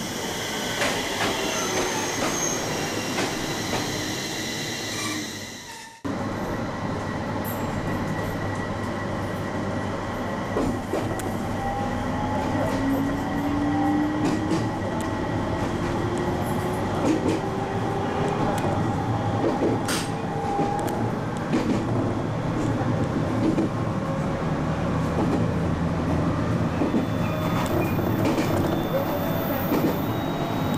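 An electric local train pulling along a station platform, fading out over the first few seconds. Then the running noise inside the moving train: a motor whine rising in pitch as it gathers speed, and scattered clacks of wheels over rail joints.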